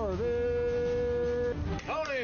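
A high, voice-like sound swoops up and down in pitch, then holds one steady note for over a second before swooping again, over a steady low hum.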